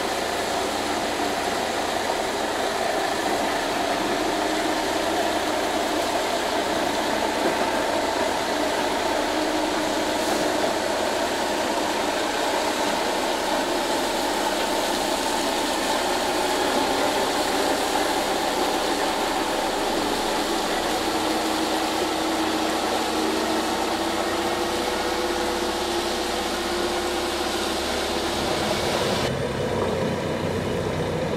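Volvo FH16 500 log truck's 16-litre straight-six diesel running steadily on a descent, heard from the trailer together with a steady rush of tyre and gravel noise.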